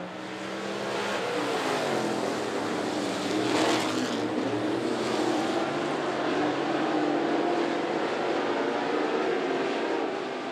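A pack of dirt late model race cars at full throttle on a dirt oval, several engines running together, their notes rising and falling as the cars drive through the turns. The sound is loudest about three and a half seconds in.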